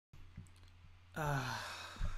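A man's heavy voiced sigh, falling in pitch, starting about a second in.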